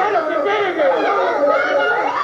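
A roomful of people talking over one another in excited chatter, several voices overlapping with no single speaker clear.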